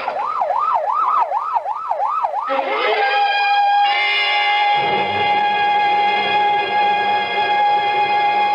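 Ambulance siren sound effect wailing rapidly up and down, about two and a half cycles a second, cutting off about two and a half seconds in. A sustained music chord then comes in and grows fuller as more notes join.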